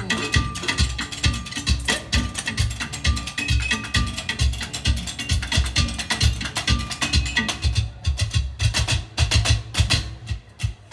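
Street percussion show of found objects: plastic buckets, trash bins, metal tubs and scaffolding struck in a fast, dense rhythm over a steady bass beat.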